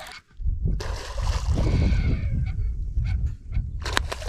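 A hooked redfish splashing and thrashing at the surface during the fight, with a few short sharp splashes near the end. A heavy low rumble runs underneath.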